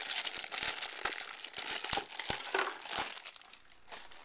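Clear plastic bag crinkling and rustling in the hands as it is pulled off an external hard drive, a dense run of fine crackles that thins out near the end.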